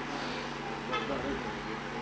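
A steady background hum with a couple of held tones, much quieter than the speech around it.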